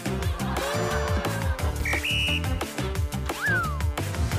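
Background music with a steady beat. About two seconds in come two short high beeps, and near the end a falling whistle-like glide.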